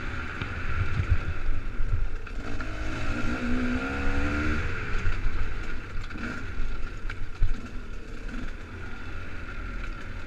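Enduro dirt bike engine running on forest singletrack, with a rev rising and falling about three seconds in. Bumps and knocks from the trail run through it, the sharpest about seven seconds in.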